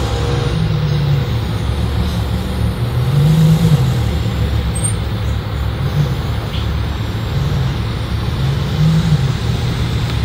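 Low, steady rumble of idling car engines and street traffic, swelling and easing every few seconds.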